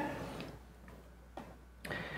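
Faint clicks and handling noise in a quiet hall: a small click about one and a half seconds in and a short rustling knock near the end, after the echo of a spoken word dies away.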